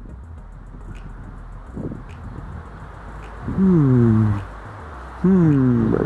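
Two long, low, moan-like vocal sounds about a second apart, each falling in pitch, over a low rumble of background noise.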